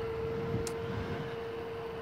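Electric bike riding at a steady speed: a steady, even whine from its motor over faint wind and tyre noise, with one brief click about a second in.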